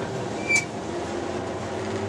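In-cabin sound of a 2001 Ford Escort ZX2's 2.0-litre four-cylinder engine running hard on track, with road and wind noise; its note rises slightly. A brief high chirp about half a second in is the loudest moment.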